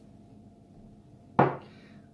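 A stemmed whisky tasting glass set down on a tabletop: a single sharp knock about one and a half seconds in, against quiet room tone.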